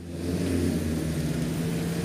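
A low, steady motor hum that grows a little louder over the first half second, then holds.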